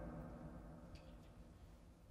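A single musical note ringing and slowly dying away, faint throughout, with a faint high tick about a second in.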